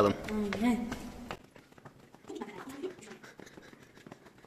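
Footsteps climbing stone stairs, a string of faint scuffs and taps. A person's voice talks over the first second and murmurs briefly midway.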